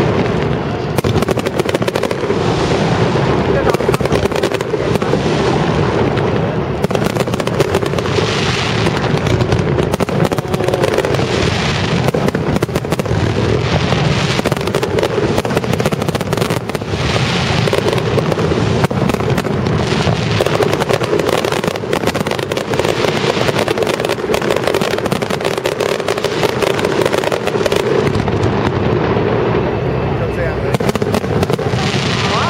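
Aerial fireworks shells bursting in rapid succession, a dense, continuous run of bangs and crackles with no real pause.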